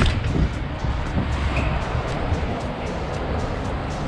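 Wind rushing and rumbling over the microphone while riding a bicycle down a city street, under background music with a steady beat.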